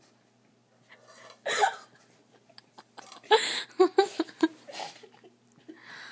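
Young women's stifled laughter: a short burst about a second and a half in, then a run of quick, gasping laugh pulses in the middle.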